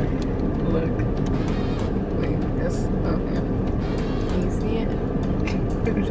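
Steady low rumble inside a car's cabin from the idling engine, with small scattered clicks of handling.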